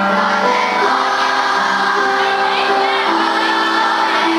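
A large children's choir singing together in unison, holding each note and stepping from one pitch to the next.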